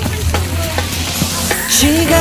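Water splashing and spattering with a crackling hiss, with pop music going on underneath.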